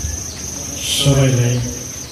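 A man speaks one short phrase about a second in, over a steady high-pitched tone that does not change.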